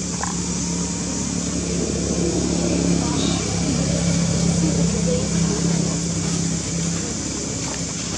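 People's voices in the background over a steady low hum.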